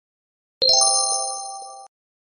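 A single bright bell-like chime, the sound logo over an end card, struck a little over half a second in: several clear tones ring together and fade, then cut off abruptly just before the end.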